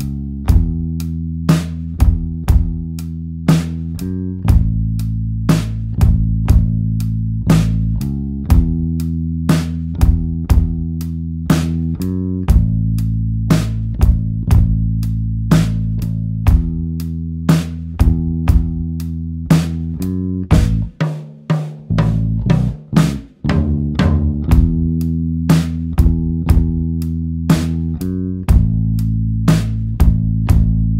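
Closing music: a band with drum kit and bass guitar playing a steady beat with sustained bass notes. Around two-thirds of the way through, the music briefly drops out between a few single hits, then the groove picks up again.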